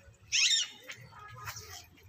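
Birds calling outdoors: one loud, harsh squawk about a third of a second in, then fainter short chirps.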